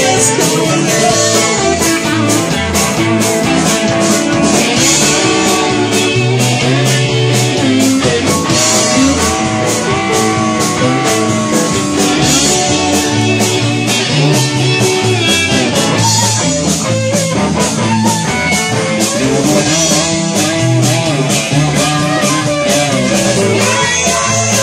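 Live blues-rock band playing an instrumental passage: electric guitar to the fore with bending notes, over bass and drums with steady cymbal strokes.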